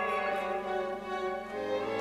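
Opera orchestra playing, violins to the fore, with sustained string lines; a low bass note comes in about one and a half seconds in.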